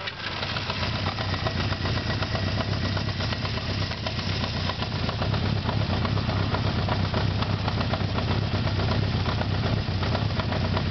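Honda CB550's air-cooled inline-four engine idling steadily, moments after being started, with an even fast exhaust pulse.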